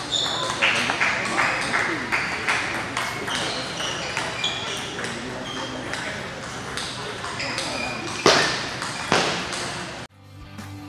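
Table tennis ball clicking off the paddles and table through a rally, the sharp knocks coming in quick succession. Two hard strikes, about eight and nine seconds in, are the loudest sounds.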